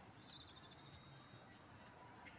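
A small bird's faint, high, rapid trill lasting about a second.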